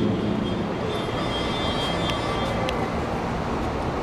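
Steady outdoor background rumble and hiss, like distant street traffic, with a couple of faint clicks.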